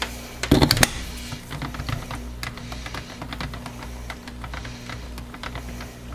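Stick blender knocking and scraping against the plastic measuring jug as it is worked through soap batter: a run of small clicks and taps, with two louder knocks just under a second in, over a faint steady hum.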